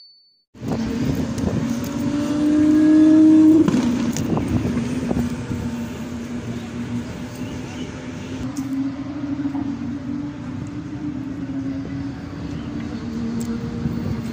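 An engine drone heard from a distance, rising slightly in pitch and loudest about three seconds in, then holding a steady tone, with a few faint clicks.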